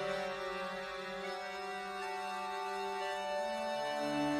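Karaoke backing track playing an instrumental passage with no singing: sustained chords that shift about a second in and again near the end.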